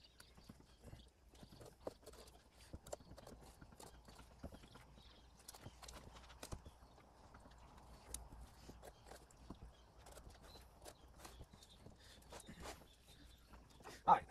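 Faint, irregular clicks and taps of knife work as a large snapping turtle is cut up, the blade catching on shell, bone and the table.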